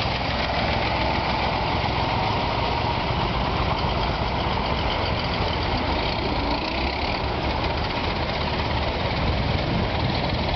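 Engines of early brass-era antique cars running at low speed as they pull away: a steady engine note with a fast, even beat.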